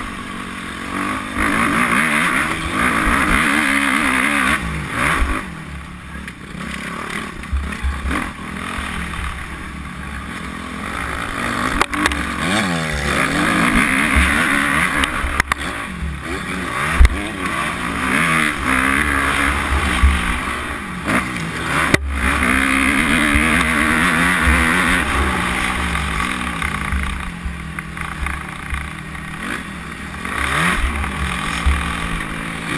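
Close, on-board sound of a 250 cc motocross bike's engine revving hard and easing off again and again as it is ridden around a dirt track, with wind noise on the microphone. One sharp knock stands out a little past halfway.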